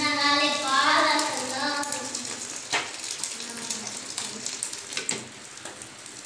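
Thin, lentil-like soup poured from an aluminium pot through a stainless steel mesh strainer into a plate, making a soft steady splashing wash with a couple of sharp metal clinks. A child's voice in long held notes is the loudest sound for the first two seconds.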